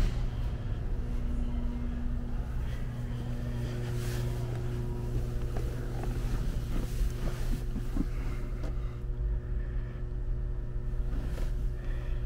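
A steady low hum, with a few light knocks and rustles about four seconds in and again around seven to eight seconds in.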